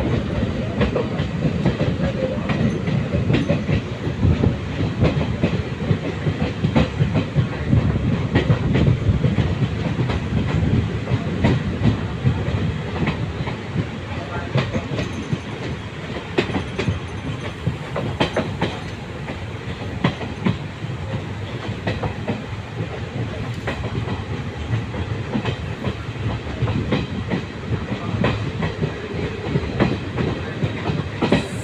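Passenger train coaches running along the track, heard from an open coach window: a steady rumble with frequent clicks of the wheels over rail joints.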